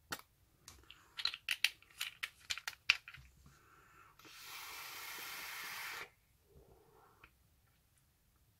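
Several short clicks and taps from handling a vape box mod and its tank, then a steady airy hiss lasting about two seconds from a hit on the vape.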